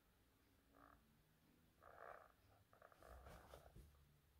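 Near silence: room tone, with a few faint, indistinct short sounds.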